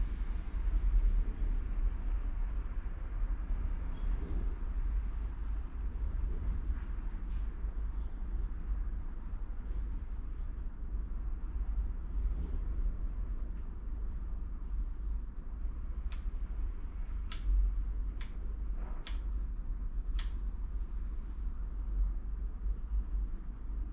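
A steady low hum, then five sharp clicks in the last third as a dial test indicator and its magnetic stand are handled on the engine block.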